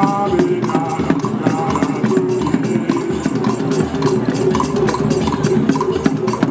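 Traditional Nigerian drum music: hand drums and wooden percussion played together in a fast, steady beat for dancing.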